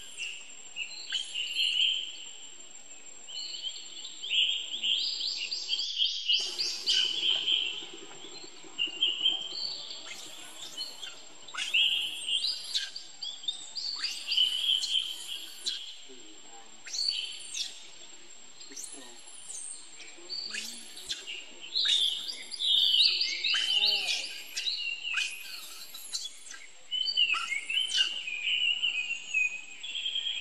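Birds chirping in many short, high calls over a steady high-pitched insect drone.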